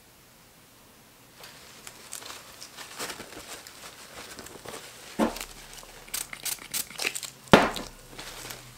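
Gloved hands handling small soap pieces: crinkling and rustling that starts about a second and a half in, with two sharper knocks, the louder one near the end.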